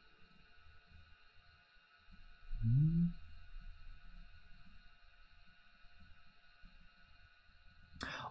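A quiet stretch with faint steady tones, broken about two and a half seconds in by a short rising hum from a man's voice.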